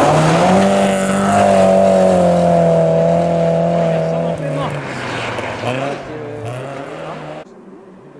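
Volvo rally car's engine held at high revs for about four seconds as it slides through a snowy corner, over a hiss of tyres and thrown snow. Then the pitch drops and rises several times as the driver lifts and gets back on the throttle, and the sound falls away abruptly near the end.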